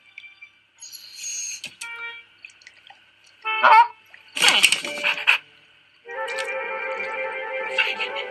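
Soundtrack of an animated short film played through a computer: a few short cartoon sound effects, including a brief wavering pitched cry and then the loudest event, a harsh noisy burst about halfway, followed about six seconds in by music with held, sustained chords.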